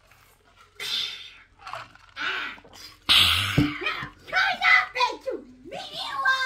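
Human voice sounds: a few short breathy, hissing bursts, the loudest about three seconds in, then pitched voice-like sounds with gliding pitch over the last two seconds.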